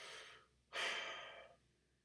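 A man's breathing close to the microphone: two breaths, the second louder and longer, starting about three-quarters of a second in.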